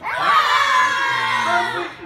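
A group of young children roaring together, one loud shout of many voices that lasts nearly two seconds and dies away just before the end.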